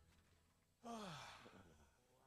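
A man sighs once, about a second in: a breathy exhale that falls in pitch.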